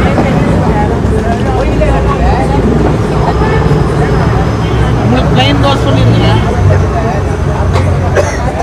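Busy street ambience: a steady low engine hum from road traffic mixed with the chatter of people around a food stall.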